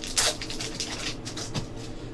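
Hands opening a foil pack of graded trading cards: a brief crinkle of foil about a quarter-second in, then faint rustling and handling of plastic, over a steady low hum.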